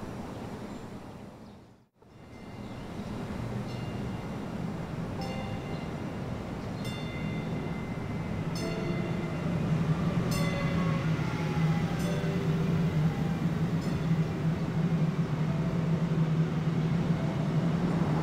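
Train rumbling at a station, a steady low rumble that grows louder from about ten seconds in, with short high squeals over it. The sound drops away to near silence briefly about two seconds in.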